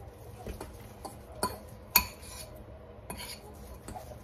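Kitchen utensils and dishes clinking and knocking during food prep at the counter: a scatter of light, irregular clinks, the sharpest about two seconds in.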